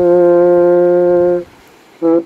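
French horn (Waldhorn) playing one long held note that stops about a second and a half in.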